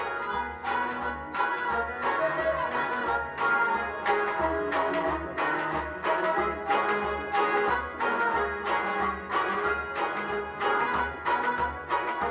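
Kashmiri Sufi devotional music: a harmonium playing sustained chords and melody over a steady rhythmic beat struck by hand on a clay pot drum.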